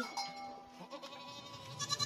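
Goats bleating.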